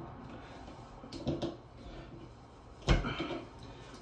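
Faint small clicks of pliers working a Moen shower valve cartridge into the valve body, then one sharp knock about three seconds in as the cartridge seats flush.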